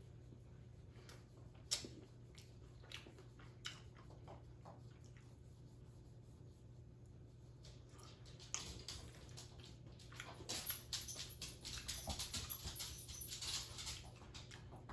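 Faint eating sounds: a fork clicks on a china plate a few times, then from just past halfway a run of quick soft clicks and mouth noises.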